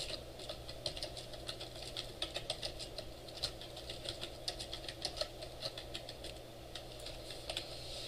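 Computer keyboard typing: faint, irregular keystrokes, several a second, over a steady low hum.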